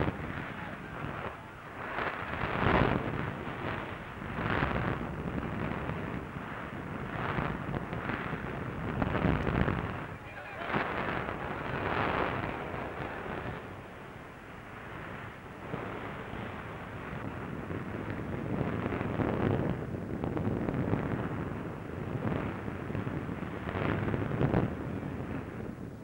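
Burning airship wreckage on an old newsreel soundtrack: a rumble of fire with repeated explosion-like swells every second or two, muffled and narrow in sound, with indistinct voices mixed in.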